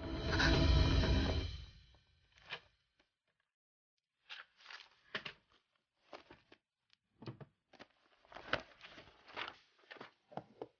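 A short musical sting: a held chord over a deep boom that fades out within two seconds. After that it is quiet except for scattered soft rustles and light knocks of paper and books being handled: pages of a bound book leafed through and volumes shifted on a wooden shelf.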